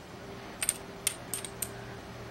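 Glass tube of a vape tank clinking against its metal base as it is pressure-fitted by hand: several small, sharp clicks in the second half, over a faint steady hum.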